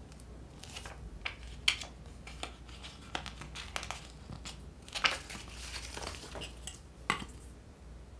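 Magazine paper being handled: rustling and crinkling, with several short sharp crackles at irregular moments, the loudest a couple of seconds in, about five seconds in and near the end.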